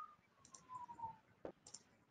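Near silence, with a faint tone slowly falling in pitch over the first second and a single faint click about one and a half seconds in.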